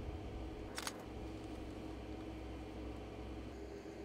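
A camera shutter firing once, a quick double click about a second in, over a low steady hum.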